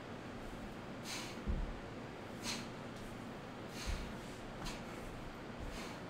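A man's short, sharp breaths exhaled in rhythm during leg raises, about one every one and a half seconds, some with a soft low thump, over a steady background hiss.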